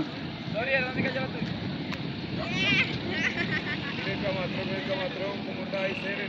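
Faint, scattered voices of people some way off, over a steady background of outdoor noise.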